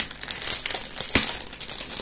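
Clear plastic wrapping crinkling as it is pulled open by hand, with one sharper crackle a little over a second in.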